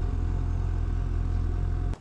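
2015 Suzuki GSX-S750 inline-four engine, intake silencer removed, running steadily at low revs as the motorcycle rolls slowly. The steady engine note cuts off suddenly near the end.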